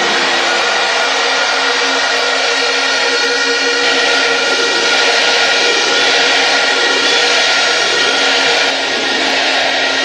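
A large crowd cheering loudly and without a break after a line of a victory speech, with faint steady tones running underneath.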